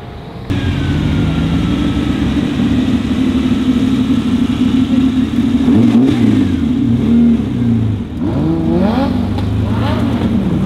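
Engine of a red Ferrari replica sports car idling steadily, then revved in several rising and falling blips from about six seconds in as the car pulls away. The first half second is quieter, distant car sound that cuts off abruptly.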